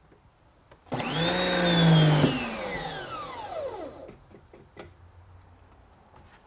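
Wall-mounted electric pressure washer switched on: its motor starts suddenly with a rising whine, runs loud for about a second and a half, then cuts off and spins down in a falling whine over a couple of seconds. A few light clicks follow.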